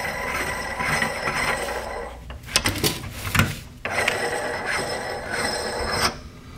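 Steel retention nut being turned by hand on the threaded hub of a torque limiter assembly, a continuous metal-on-metal rubbing with a few clicks near the middle as the thread is worked until it clips in.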